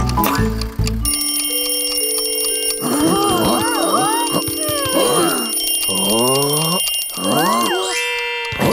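A cartoon bell on top of a prize wheel ringing fast and without a break, like an alarm-clock bell, starting about a second in, over held music notes. High, squeaky cartoon voices chatter over it from about three seconds in.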